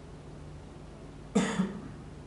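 A person coughing once, a short double burst about one and a half seconds in, over a steady low room hum.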